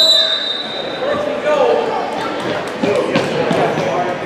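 A referee's whistle blast, ending just after the start, stopping play over a scramble on the floor, followed by spectators' and players' voices in a large gym with a few sharp knocks on the court.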